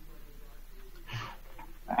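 A pause in a man's speech, with a short intake of breath about a second in; his speech resumes at the very end.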